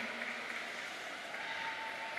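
Steady background noise of a large indoor arena, a faint even wash of crowd and hall sound, with a thin steady tone joining it about halfway through.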